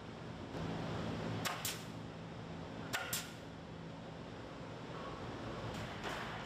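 Pneumatic nail gun firing into wood framing: two quick pairs of sharp shots, the pairs about a second and a half apart, over a steady low hum of factory machinery.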